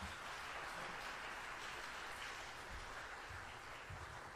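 Congregation applauding at the end of a sung solo: steady clapping that thins slightly near the end.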